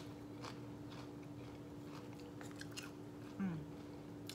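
A person chewing a crisp chip, with a few scattered soft crunches. A steady low hum runs underneath.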